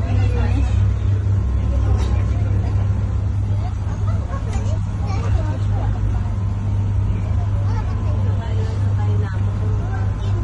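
Motorboat engine running with a steady low drone, heard from inside the enclosed passenger cabin while under way, with passengers' voices chattering over it.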